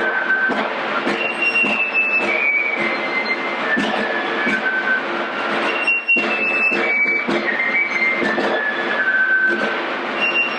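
Fife and drum playing an 18th-century military tune: the fife carries a high melody in repeated falling phrases over continuous snare-drum rolling, with a brief break about six seconds in.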